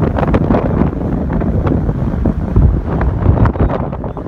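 Wind buffeting the microphone of a phone filming from a moving car's window, a loud, gusty rumble that rises suddenly just before and falls away just after.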